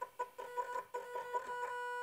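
Electric motor of a home-built linear drive turning its threaded rod, giving a whine in short pulses, about six a second, that settles into a steady tone about halfway through.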